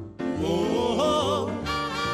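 Male vocal group singing with instrumental accompaniment: a short break just after the start, then a sung line with a wavering pitch, and fuller held harmonies near the end.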